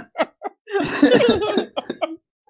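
People laughing in short, breathy bursts at a joke.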